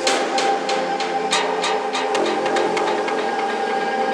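Psytrance track intro: a steady synth pad with irregular sharp clicks and hissing strikes layered over it, and no kick drum or bass yet.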